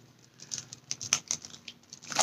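A handful of light, irregular taps and clicks, starting about half a second in, as molds and their packaging are handled.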